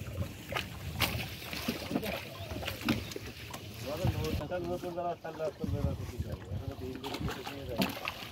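A wet fishing net being hauled by hand into wooden boats, with sharp knocks of the net and hands against the boat planks and water splashing, while men's voices talk over it.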